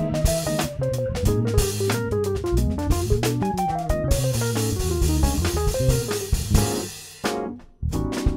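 Electric bass playing a fast jazz solo line of quick single notes, with a drum kit accompanying on cymbals and drums. The playing drops away for a moment near the end before drum hits come back in.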